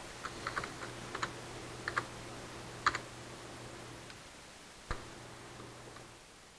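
Computer keyboard typing: a few quick keystrokes in the first two seconds, then single key taps near three and five seconds. A faint steady hum stops about four seconds in.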